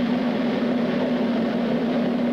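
A steady low hum under an even hiss of background noise, with no other event standing out.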